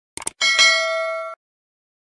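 A couple of quick clicks, then a bright bell ding that rings for about a second and stops abruptly: a notification-bell sound effect.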